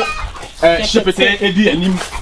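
A man talking loudly in a local language, with short excited phrases and a drawn-out syllable near the end.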